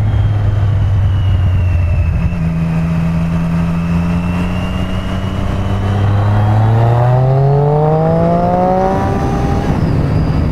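Motorcycle engine heard from the rider's seat over wind rush. The engine note steps up about two seconds in and holds steady, then rises from about six and a half seconds as the bike accelerates, and drops sharply near the end at an upshift.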